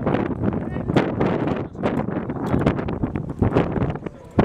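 Wind buffeting the camera's microphone in uneven gusts, a loud rumbling rush.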